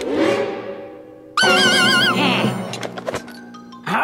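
Cartoon soundtrack: a sweeping whoosh at the start, then from about a second and a half in a loud, high wavering note with a strong vibrato, and a few soft knocks.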